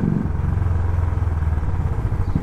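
Royal Enfield Classic 350's single-cylinder engine running steadily while the bike is ridden, heard from the saddle as a low, even hum.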